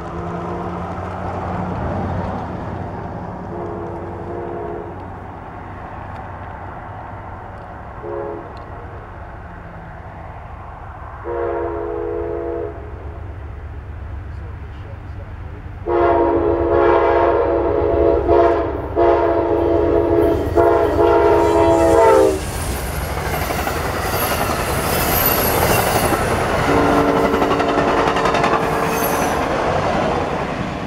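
Amtrak passenger train's locomotive air horn sounding a multi-note chord in a long, long, short, long pattern, the grade-crossing signal, over a steady low engine drone. From about 16 seconds comes a loud, broken run of horn blasts for about six seconds. The train then passes with a loud rush of wheel and rail noise, and one more horn blast near the end.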